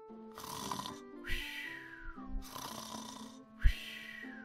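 Comic cartoon snoring, two breaths: a rasping snore on each in-breath, then a whistle falling in pitch on the out-breath, over soft background music. A short sharp thump comes just before the second whistle.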